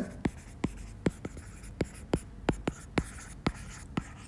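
Stylus tip tapping and clicking on an iPad's glass screen while handwriting words and digits: a quick, irregular run of light clicks, about three a second.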